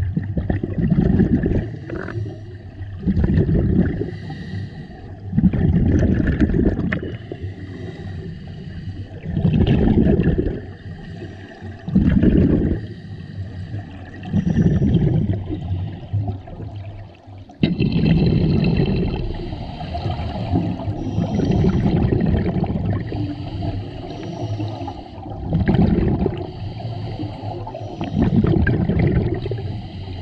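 Scuba breathing underwater through a regulator: exhaled bubbles rumble out in bursts every few seconds, with quieter stretches between breaths.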